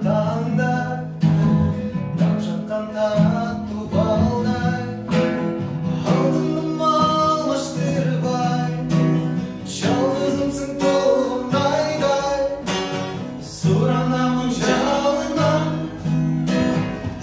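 Acoustic guitar strummed in steady chords, with a man singing a melody over it.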